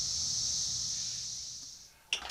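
Steady high-pitched buzz of cicadas, fading out near the end.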